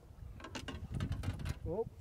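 A quick, uneven run of small mechanical clicks and knocks, ending in a spoken "Oh".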